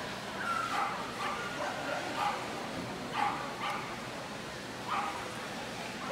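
Dogs barking and yipping: several short, irregular barks over steady background noise, the loudest about three seconds in.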